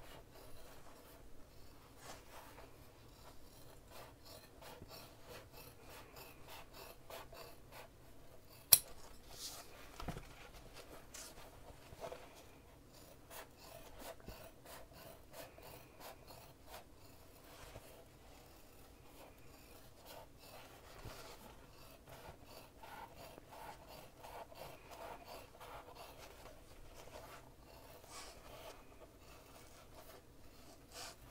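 Fabric scissors snipping along a sewn seam over and over, trimming the seam allowance through layered fabric, with soft rubbing of the fabric as it is handled and turned. One sharp click about a third of the way in, with a smaller knock just after.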